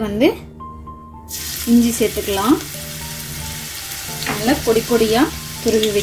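Grated ginger dropped into hot oil in a wok, sizzling as it starts to fry. The sizzle begins about a second in and then runs on steadily.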